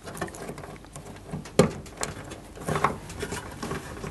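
Hands handling plastic wiring connectors and wires on a tumble dryer's heater element assembly: light rustling with scattered small clicks and taps, the sharpest about one and a half seconds in.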